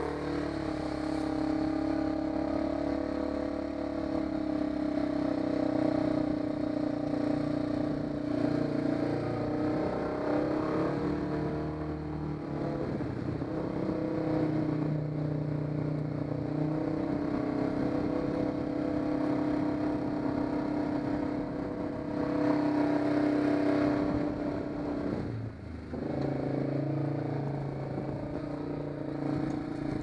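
ATV engine running steadily at low speed, its pitch dipping briefly near the end as the throttle eases and then picks up again. Water splashes and stones scrape under the wheels as the quad wades through a shallow rocky creek.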